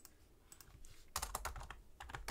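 Faint typing on a computer keyboard: a couple of keystrokes about half a second in, then a quick run of keystrokes from about a second in.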